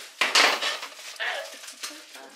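A metal spatula clattering and scraping in a frying pan of cooking eggs, with a loud burst of noise about a third of a second in.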